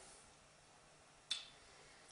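Near silence with one short, sharp click a little past the middle.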